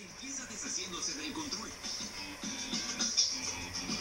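Television audio recorded off the set's speaker: background music with a voice over it.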